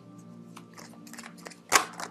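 Soft background music with a run of light papery clicks and snaps from tarot cards being handled, the loudest a sharp snap near the end.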